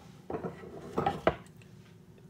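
Tools handled and set down on a wooden workbench: about three short knocks and clinks, the loudest a little past a second in.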